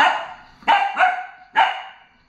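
A puppy giving four short play barks in quick succession at a toy hamster on the floor.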